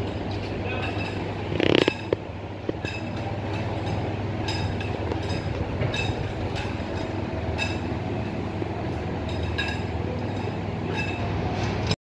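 Steady low machine hum with sharp clicks about once a second. A short loud burst about two seconds in.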